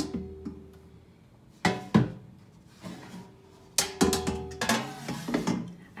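The air fryer's metal pan and basket being handled: a few sharp knocks and clanks, two of them ringing on briefly with a steady tone.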